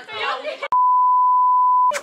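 An editor's censor bleep: one steady, high electronic tone about a second long that blanks out the speech, starting and stopping abruptly with a click. Talking and laughter come just before it.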